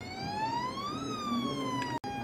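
Electronic police-siren wail, one slow sweep that rises for about a second and then falls.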